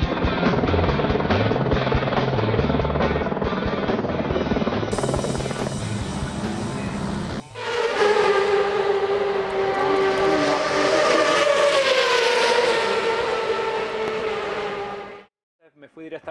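Rock music with a driving bass line, then after an abrupt cut a high-pitched engine note holds steadily for about seven seconds, dipping slightly in pitch before it stops.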